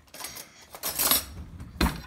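Metal cutlery rattling as a spoon is fetched, then a single sharp clink shortly before the end.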